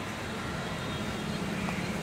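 Steady outdoor background noise with a faint low hum that swells slightly near the end, like distant motor traffic.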